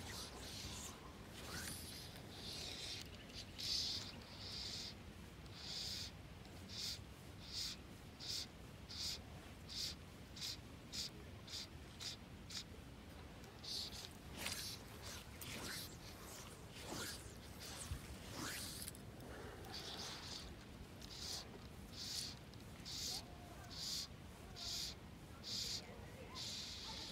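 Fly line being stripped in by hand through the rod guides in short, even pulls: a rhythmic hissing zip about one and a half times a second, with a pause of irregular rustles and clicks midway.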